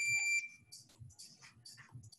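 A steady, high-pitched electronic beep with overtones cuts off about half a second in, leaving only faint background sound.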